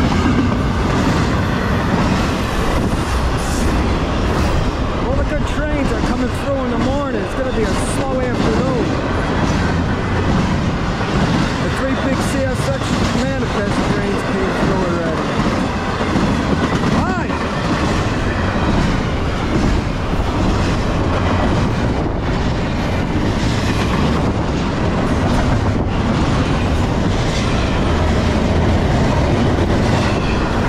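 Norfolk Southern intermodal freight train's double-stack well cars rolling past close by: a steady, loud rumble and clatter of steel wheels on the rails. A wavering whine comes and goes in the middle stretch.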